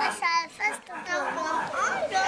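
Young children's voices chattering and playing, with a short high-pitched squeal about a quarter second in.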